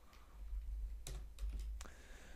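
Computer keyboard typing: a handful of separate key presses in quick succession in the second half.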